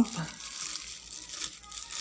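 Thin plastic bag crinkling softly and irregularly as hands handle a small device wrapped in it.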